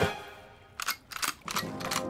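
Cartoon sound effects over background music: a sharp click as the ride's control wheel is turned, then a quick run of clacks about a second in. A held music chord comes in near the end.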